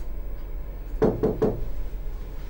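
Three quick knocks on a door, evenly spaced about a fifth of a second apart, a little after one second in.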